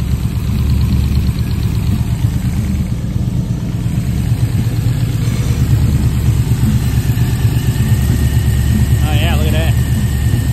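Chevy V8 with a Killshot throttle-body fuel injection idling steadily on an engine run stand, its ignition timing set at about 15 degrees before top dead center.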